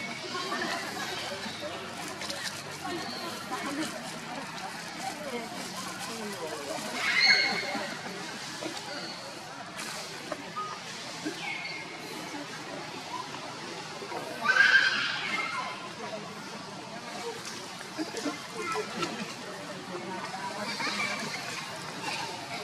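Two short, high-pitched macaque calls, about 7 and 15 seconds in, with fainter chirps between. Under them runs a low murmur of distant voices.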